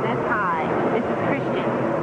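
Indistinct voices of people talking over steady background noise.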